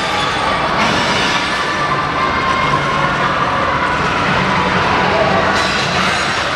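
Loud, steady indoor din with indistinct voices blended in.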